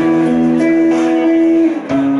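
Live band music with no singing: an electric guitar plays held, ringing chords, with a brief drop in level just before the end.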